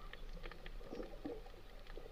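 Faint underwater background noise with a low steady hum and scattered faint clicks and ticks.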